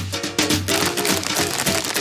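Background music with percussion and held instrumental notes.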